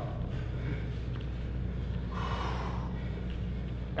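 A single hard, breathy exhale about two seconds in, from a bodybuilder straining to hold a side chest pose, over a steady low hum.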